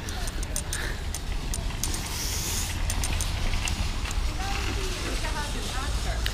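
Outdoor wind buffeting the camera microphone, a steady low rumble, with scattered light ticks and faint voices near the end.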